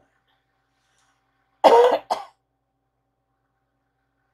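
A woman coughing: one loud cough about a second and a half in, followed at once by a shorter, weaker one.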